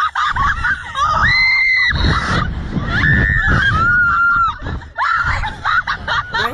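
A young woman screaming and laughing on a fairground thrill ride: two long high screams, the first about a second in and the second from about three seconds, over a steady rushing noise.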